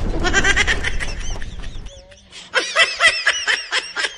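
The rumble of a boom sound effect fades out over the first two seconds, with quick high chirps over it. About two and a half seconds in, a high-pitched snickering laugh sound effect starts up in quick, short pulses.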